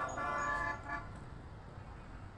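A vehicle horn sounding one held honk of about three-quarters of a second, then low street noise.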